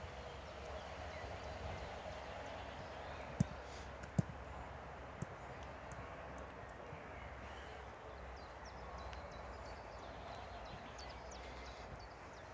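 Faint, steady outdoor background noise with no clear source, broken by two sharp taps about three and a half and four seconds in.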